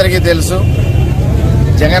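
A man speaking in Telugu, a short phrase at the start and again near the end, over a loud, steady low rumble of outdoor noise.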